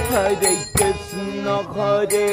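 Devotional kirtan: a voice singing a chant with a wavering, ornamented melody over sustained steady instrumental tones, with a few percussion strikes in the first second.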